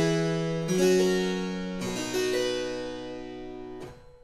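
Double-manual Carl Dudash harpsichord playing a short chord progression, chords struck about a second apart, the last one ringing until it is released near the end. It demonstrates the simple I–IV–V–I progression of the early passacaglia.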